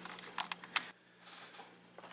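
A few faint clicks and light handling noise, as of a hand fumbling at a camera, with a brief moment of near silence about halfway through.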